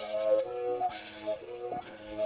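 Umrhubhe, a Xhosa mouth bow, played by rubbing a thin stick across its string while the mouth shapes the overtones. It gives a whistle-like melody stepping between a few notes, with the stick's strokes marking a pulse about twice a second.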